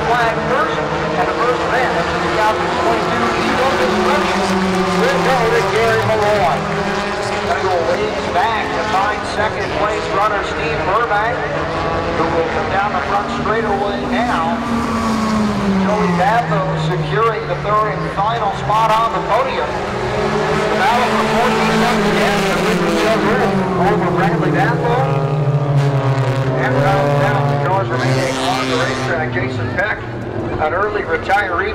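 Race car engines running on the speedway oval, their pitch falling and rising slowly over several seconds as the cars circle the track, over busy crowd voices.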